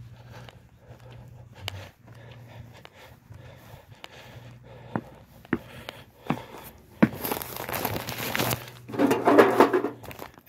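Footsteps on a concrete walk, then paper flyers crinkling and rustling loudly for the last few seconds as one is pulled from a bundle and delivered at the door.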